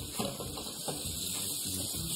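Food sizzling steadily in a hot pan on the stove.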